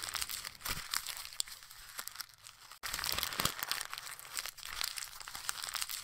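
Sheet of paper being crumpled up, a dense run of crackles and rustles with a brief break about halfway through.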